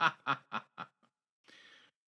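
A person laughing in a run of short bursts, about four a second, that fade out about a second in.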